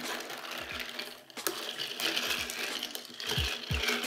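A long bar spoon lifting and stirring ice through a drink in a stemmed wine glass. The ice makes a steady run of small clinks and rattles against the glass.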